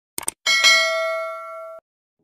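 Subscribe-button sound effect: a quick double mouse click, then a notification-bell ding that rings with several clear tones and fades, cut off short after about a second.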